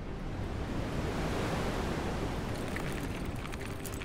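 Rushing whoosh sound effect for an animated logo intro: a swell of noise like wind or surf that builds to its loudest about halfway through and then eases slightly, with faint crackles near the end.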